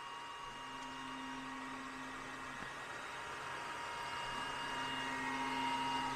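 Stepper motors of an xTool D1 Pro diode laser engraver moving the laser head along the gantry. A low, steady whine comes in two moves of about two seconds each, the first starting about half a second in and the second near the end, over a steady background hiss.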